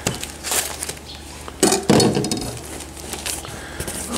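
Kitchen knife scraping and sawing at the packing tape and cardboard of a box, too dull to cut through easily, with a louder metallic clatter about a second and a half in.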